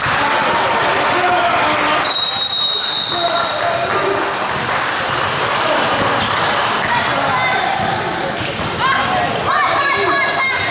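Indistinct chatter of many voices, echoing in a large gymnasium. A single high steady tone sounds for about a second, around two seconds in.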